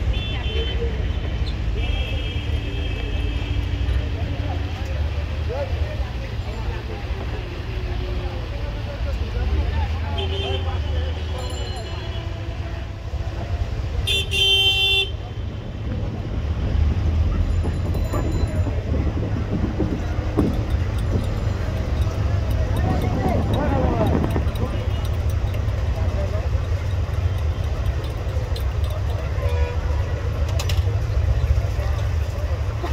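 Open-air riverside ambience: vehicle horns tooting several times, in short blasts about a second in, at two to four seconds, near ten seconds, and loudest at about fifteen seconds, over a steady low rumble, with people's voices in the background.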